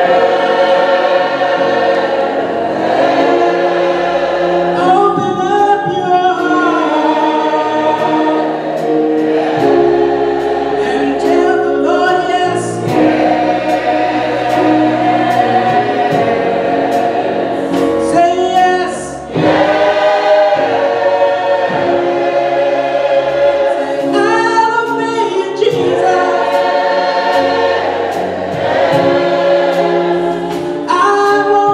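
Mixed church choir of men and women singing a gospel song in sustained chords, with a brief break around two-thirds of the way through before the singing picks up again.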